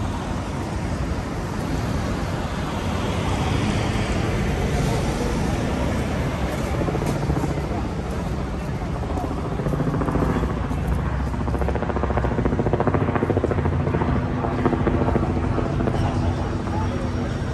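Busy city street ambience: steady road traffic with the voices of passers-by. About two-thirds of the way in, a low engine hum becomes more prominent.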